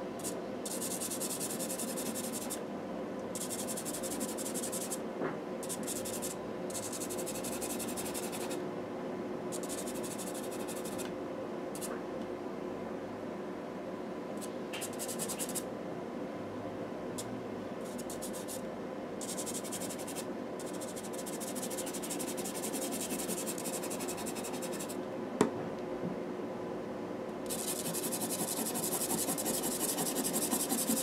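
Carbothello chalk-pastel pencil stroking on textured pastel paper: dry scratching in runs of one to several seconds, with short pauses between the runs. There is one sharp tap late on.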